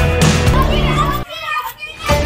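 A group of children shouting and cheering over loud background music. The music drops out a little over a second in, leaving mainly the children's excited voices.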